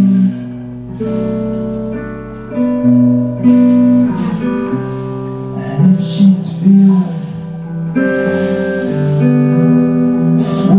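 A live band playing: electric guitar with long held notes over drums.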